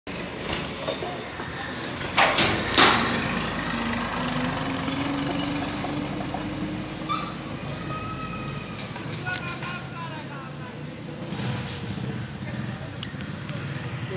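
Outdoor road ambience: a steady low hum of traffic, with two short loud bursts of noise about two seconds in and a vehicle engine note rising slowly in pitch just after.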